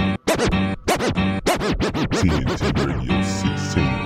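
A rapid run of DJ record scratches, each a quick rise and fall in pitch, coming faster and faster over a hip hop beat. About three seconds in, a new hip hop beat starts.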